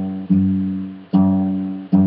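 Acoustic guitar's low G (third fret of the low E string) plucked by the thumb as steady quarter notes: three strikes of the same bass note, each ringing and fading before the next.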